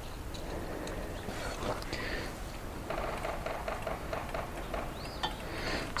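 Quiet outdoor background with a few faint clicks and light handling sounds as a measuring tool is worked against a stopped wood chipper's blade. A short high chirp comes about five seconds in.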